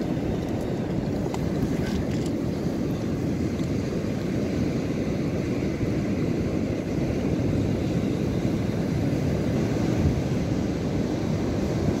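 Steady wind rumbling over the microphone, mixed with the wash of sea surf on the shingle.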